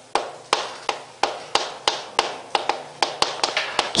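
Chalk writing on a chalkboard: a quick, irregular series of sharp taps, about three or four a second, each fading out quickly, as a word is written stroke by stroke.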